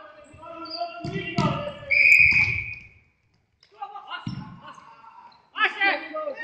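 A referee's whistle gives one short, shrill blast about two seconds in, stopping play. It comes among shouting voices and thuds of a futsal ball on the hard hall floor, and the sound echoes in the large hall.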